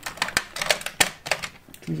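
Makeup tubes and cases clicking and knocking against each other as they are handled and picked through: a quick, irregular run of small sharp clicks.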